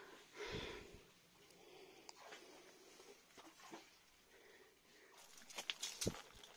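Near silence, broken by one short soft puff a little under a second in and a few faint clicks and rustles near the end.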